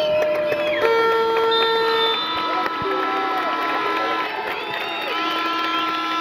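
Football stadium crowd with fans' horns blowing long held notes of different pitches, one after another and overlapping, over crowd voices.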